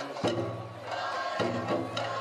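Bon-dance music: a taiko drum struck twice, a little over a second apart, each beat ringing on low, over shamisen and a singer's chanted verse.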